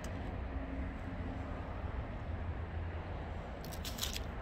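Steady outdoor background noise dominated by a low rumble of traffic, with a few faint clicks near the end.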